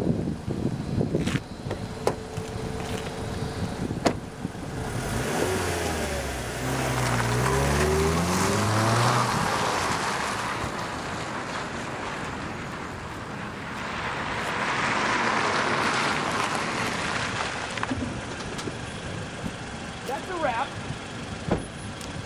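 A car door shuts about four seconds in, then a Mazda CX-5's Skyactiv four-cylinder petrol engine pulls away, its pitch rising as it accelerates. Later a broad engine and tyre noise swells and fades as the car drives past.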